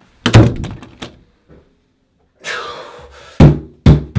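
Heavy thumps and knocks: a cluster of bangs about a second long near the start, then two hard blows near the end as fists pound on a bathroom sink counter.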